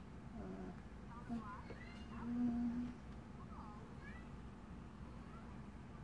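A young child's short, high, gliding vocal squeaks, with a brief steady hummed note about two seconds in that is the loudest sound; quieter after about four seconds.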